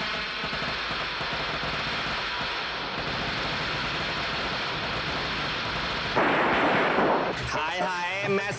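Fireworks: a dense, continuous crackle of firecrackers, with a louder rush of noise about six seconds in. A voice starts singing near the end.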